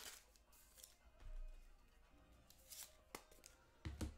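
Near silence with faint, scattered rustles and small clicks of trading cards being handled, and a soft low bump about a second in.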